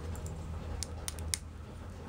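A few light clicks and taps from a fossil-bearing rock being handled and turned over in the hands, over a low steady hum.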